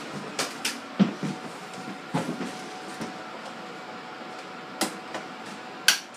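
A few sharp knocks and clicks at irregular intervals, the loudest about a second in and just before the end, over a faint steady hum.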